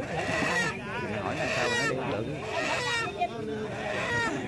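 A mourner's voice wailing and sobbing, the pitch wavering and breaking, with other voices around it.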